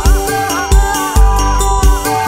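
Campursari dangdut koplo band music: a melody line with bending, sliding notes over deep drum hits that fall in a syncopated pattern, four of them in two seconds.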